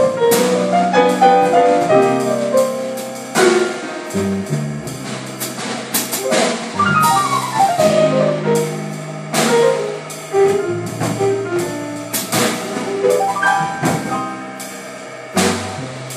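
Jazz piano trio playing: grand piano, upright double bass and drum kit, with frequent drum and cymbal strokes under the piano lines and a falling run of piano notes about seven seconds in.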